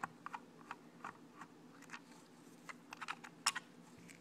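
A Phillips screwdriver turning screws out of an RC truck's plastic chassis: faint, irregular small clicks and ticks, with a couple of sharper ones about three and a half seconds in.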